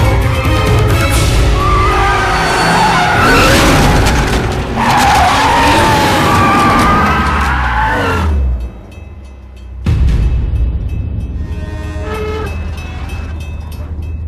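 A BMW Z4 roadster's tyres squealing as it is driven hard, mixed with a music score. After a short quieter moment, a sudden heavy thud comes about ten seconds in.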